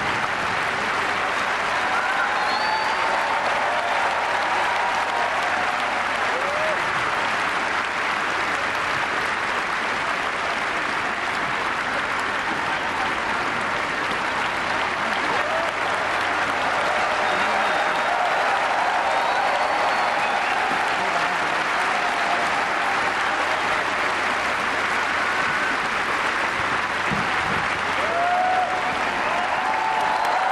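A large audience applauding steadily for the singers at a curtain call, with scattered shouts from the crowd.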